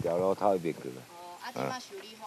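Speech only: a voice making short, broken vocal sounds with no clear words.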